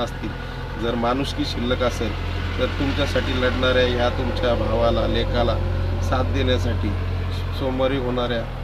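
A man talking over a steady low engine rumble, as of a vehicle running nearby. The rumble grows louder through the middle and eases off near the end.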